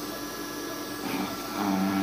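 Steady machine hum with a few held tones, with a voice starting faintly about a second in.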